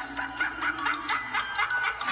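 A rapid run of short laughing pulses, about seven a second, over backing music from the music video playing on the laptop.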